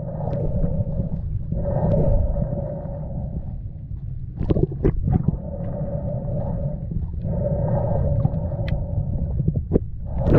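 Underwater sound picked up by a camera in its housing: a steady low rumble of water moving past, with a humming tone that comes and goes in stretches of a second or more, and a few sharp clicks, a pair about four and a half to five seconds in.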